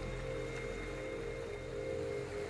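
Slow ambient drone music of steady held tones, a low layer under several higher sustained notes.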